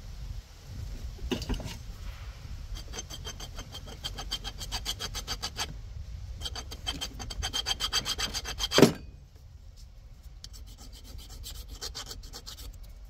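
Hand file scraping quickly back and forth over a metal ground-cable ring terminal, cleaning it to bare metal to cure a bad ground connection. The strokes come in two fast runs with a short pause between, the second ending in one louder scrape, followed by lighter strokes.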